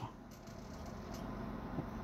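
Faint steady background hum and hiss with no distinct events.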